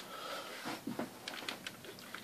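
Cotton T-shirt rubbed over a plastic radio-control transmitter, a soft rustle with a few light clicks.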